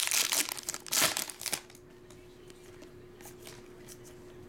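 Foil wrapper of a trading-card pack being torn open and crinkled by hand, loud and crackly for about the first second and a half, then dropping away to faint handling of the cards.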